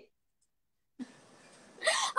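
About a second of dead silence, then a brief vocal sound like a quick laughing breath with faint hiss behind it. A voice starts up near the end.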